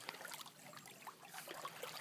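Faint trickling and running of a small muddy creek flowing past a fallen log and a row of sticks set across the channel.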